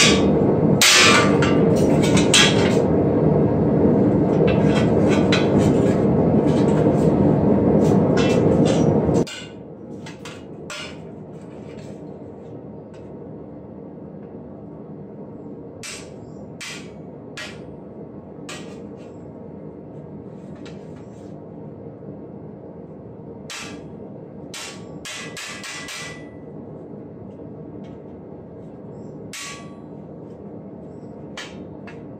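Light hammer taps on a small chisel cutting rope-like detail into the rib of a steel breastplate held on a stake, struck in irregular runs of quick taps with pauses between. A loud steady low rumble runs under the first nine seconds and cuts off suddenly.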